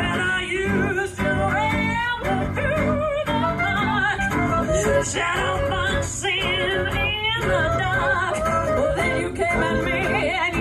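Clarinet taking an instrumental solo in a swing jazz tune, playing quick, wavering melodic runs with vibrato over the backing band of guitar, upright bass, piano and drums.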